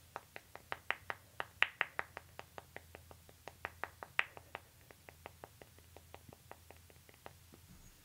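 A quick run of light, sharp clicks, about five a second, loudest in the first few seconds and fading out near the end.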